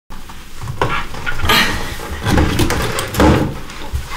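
Irregular knocks and clatters of hand tools and wooden kitchen cabinet parts being handled, with rustling of clothing, as someone works beneath a kitchen sink.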